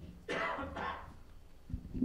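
A person coughing twice in a lecture hall, followed near the end by a low thump.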